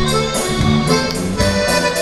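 Live band music: an instrumental passage led by accordion with a steady beat, no singing.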